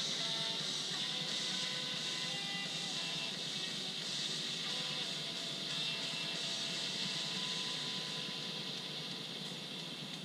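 Distant whine of an electric RC warbird's Cobra C-2820/12 brushless motor and propeller, its pitch stepping up and down with the throttle and fading out in the second half, over a steady high-pitched buzz.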